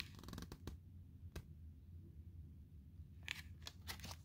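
Faint handling sounds of a pop-up book's card pages: a few soft clicks and rustles as the pop-up is moved, over a low steady hum.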